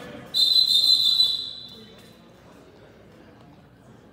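Referee's whistle blown once, a single shrill steady blast about a second long that trails off in the gym's echo.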